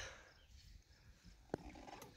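Near silence: faint room tone, with a single sharp click about one and a half seconds in.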